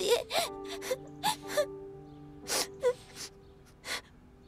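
Someone crying softly, with gasping breaths and a few short whimpers, over soft sustained background music.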